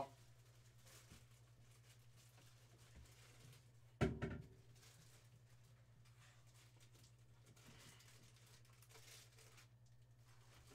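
Near silence: a quiet room with a steady low hum, broken by one sharp knock about four seconds in that rings briefly.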